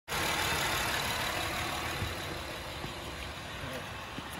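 Honda Odyssey's V6 engine idling steadily, heard from above the open engine bay.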